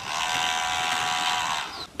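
Small DC motor whining steadily, a high, even tone with many overtones, with its speed set by a 555-timer circuit and played back through a smartphone's small speaker. It cuts off just before the end.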